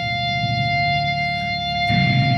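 Amplified electric guitar droning low and steady through the stage amps, over a constant high ringing tone.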